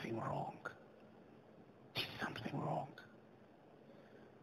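A man's voice saying two short phrases quietly, almost whispered, about two seconds apart, with faint hiss between them.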